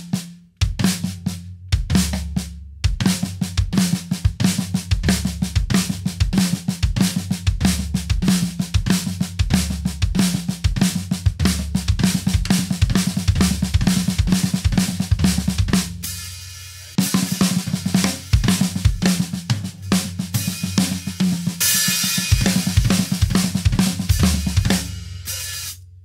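Acoustic drum kit with Aquarian heads and Zildjian K cymbals, played with sticks: a fast repeating phrase of flam accents on snare and toms with bass drum strokes, the right hand moved around the kit to try variations. It breaks off for about a second partway through, then resumes, with a cymbal washing over the strokes near the end.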